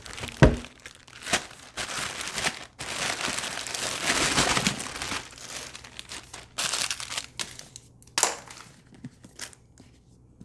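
Thin plastic bag crinkling and rustling as it is handled and shaken out, with small plastic toiletry bottles knocking lightly as they tumble onto a bath mat. A sharp knock about half a second in is the loudest sound.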